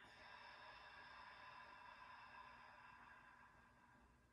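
A single faint bell-like chime, struck once and ringing out with several steady overtones that fade away over about four seconds.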